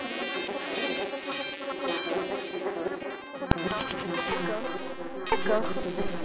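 Experimental glitch electronica: a dense, stuttering electronic texture that pulses about twice a second. A single sharp click comes about three and a half seconds in, and a louder, busier pattern sets in near the end.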